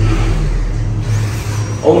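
A steady low drone, like an engine or other machinery running.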